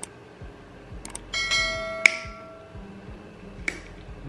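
Subscribe-button sound effect: a couple of mouse clicks, then a bell chime that rings for over a second. Sharp snaps of nail nippers cutting through a thick toenail come about two seconds in, the loudest sound, and again near the end.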